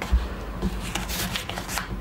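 Paper pages being handled and turned, rustling in a few short strokes, with a soft thump just after the start.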